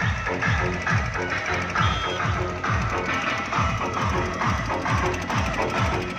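Loud DJ dance remix played through a DJ pickup's horn loudspeaker system, with heavy bass kicks that drop in pitch about twice a second.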